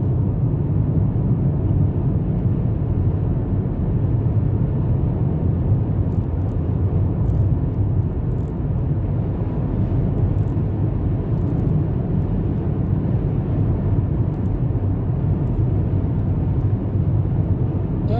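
Steady low road noise of a car driving at highway speed, heard from inside the cabin.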